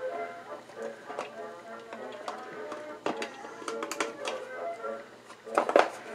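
Faint background music, with a few light clicks about three seconds in and near the end as the clock's second hand is pressed onto its shaft.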